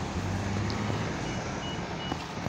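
Street traffic noise with a steady low engine drone from road vehicles, among them an approaching bus. A few faint short high beeps come in the last second.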